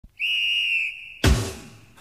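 A high, steady whistle tone held for about a second, then a sudden deep boom about a second and a quarter in that fades away, as in a title intro.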